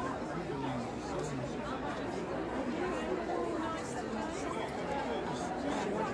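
Background chatter of many people talking at once in a large indoor hall, with no single voice close by.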